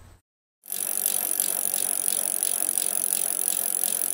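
A bicycle sound starts suddenly after a moment of silence: a steady mechanical rattle with faint regular ticks, about three a second.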